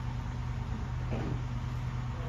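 Steady low hum of shop background noise, with no machining going on.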